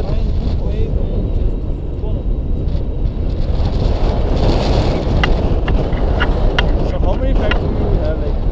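Steady wind buffeting the microphone of a selfie-stick camera during a tandem paragliding flight. A few short clicks come a little after halfway through.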